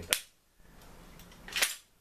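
Two sharp mechanical clicks from an airsoft 40mm grenade launcher being handled, about a second and a half apart; the second is louder and a little longer.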